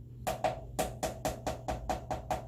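Rapid clacking of a stirring tool against the side of a mixing container, about seven knocks a second, starting a moment in. Clairol BW2 powder lightener is being mixed into cream peroxide developer.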